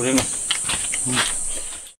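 A steady high-pitched insect chorus, with two short voice sounds over it; everything fades out just before the end.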